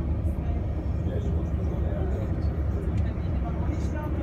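Steady low rumble of a passenger boat under way, with faint passenger voices in the background.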